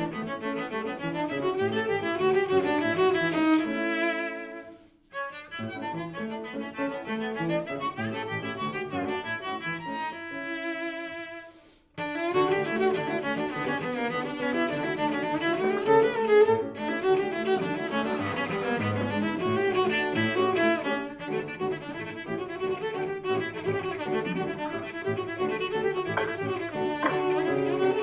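A cello playing a melodic line with piano accompaniment, heard over a Zoom video call. The sound briefly drops out twice, about five seconds in and again near twelve seconds.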